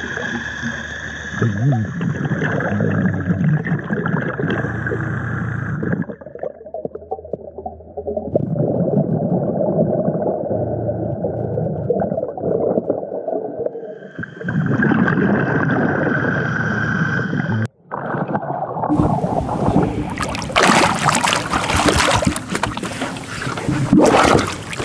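Underwater sound of a diver in a river: a steady high whine over bubbling and rumble, dulling in the middle and returning. After a brief dropout, near the end the microphone breaks the surface into splashing water.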